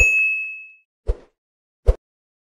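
A sound-effect bell ding that goes with a subscribe-button click animation: one bright tone, struck at once, ringing out and fading within about a second. Two short, dull thumps follow, about a second in and near the end.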